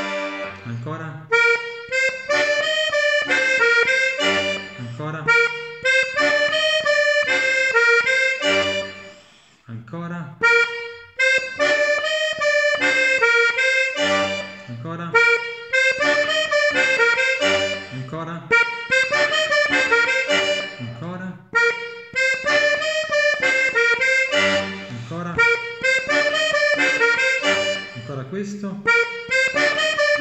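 Diatonic button accordion (major/minor organetto) playing a short tarantella exercise phrase, melody over bass notes, repeated several times with a brief break about ten seconds in.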